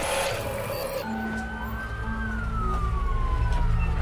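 A short whoosh, then a siren heard at a distance: one high tone held for about a second, then sliding slowly down in pitch, over a steady low rumble.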